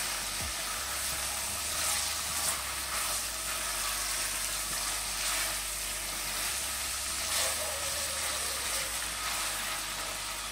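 Rabbit pieces and chopped garlic sautéing in olive oil in a stainless steel pot: a steady sizzle.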